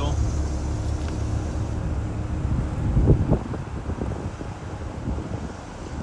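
Steady low rumble of outdoor traffic noise, with wind buffeting the microphone about three seconds in.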